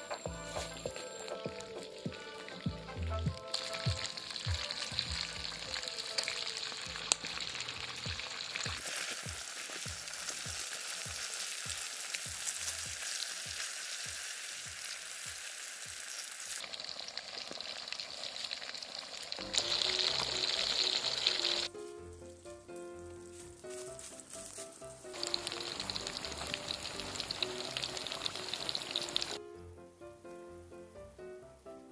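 Fish deep-frying in hot oil in a wok, a steady sizzle that jumps abruptly louder and softer several times.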